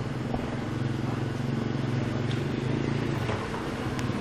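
A motor vehicle engine running steadily at low revs, a continuous low hum, with a few faint clicks over it.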